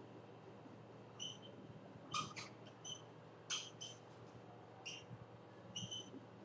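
Short squeaky strokes of a marker writing on a whiteboard, about eight irregular squeaks as a formula is written, over a faint steady room hum.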